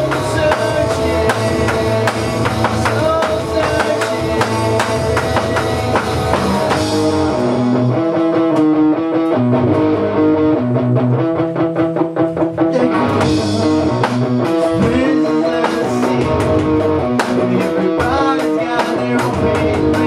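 Rock band playing: electric guitar, bass guitar and an electronic drum kit, with a singer at times. About eight seconds in the music thins out for several seconds, then the full band comes back.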